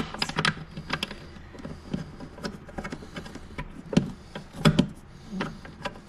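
Irregular small plastic clicks and rustling as hands work a black ribbed sleeve over bundled wiring, with two louder knocks about four seconds in and just before five seconds.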